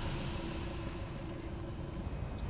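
Volkswagen Eos 2.0 FSI's naturally aspirated four-cylinder engine running at idle, a faint steady low hum.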